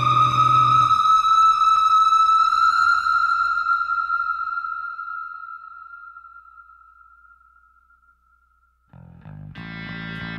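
Rock soundtrack in which the band drops out about a second in, leaving one long, distorted electric-guitar note that drifts slightly up in pitch and slowly fades away. After a moment of near silence the band comes back in, guitar and bass, about nine seconds in.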